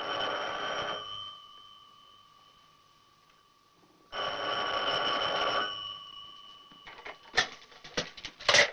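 Telephone bell ringing twice, each ring about a second and a half long with a gap of about three seconds between them, followed near the end by a few sharp clicks and knocks.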